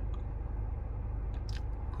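Steady low hum inside a car cabin with a fine even pulse to it, and a couple of faint clicks about a second and a half in.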